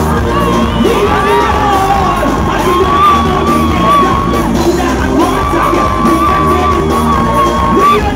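Live soca music played loud through a PA, with two long held high notes, and a crowd cheering and yelling along.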